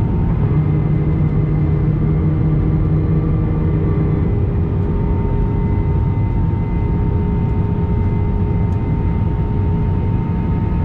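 Airliner cabin noise heard from a window seat over the wing during final approach: the jet engines and rushing air make a steady noise with a few steady tones over it. A low hum in it fades out about four seconds in.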